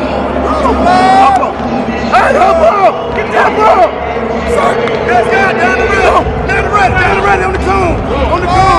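Football players and coaches shouting and calling over one another during a sprint relay race, with the babble of a crowd of voices.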